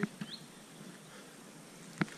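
Quiet outdoor ambience with one short, rising bird chirp about a third of a second in, and a couple of faint clicks at the very start.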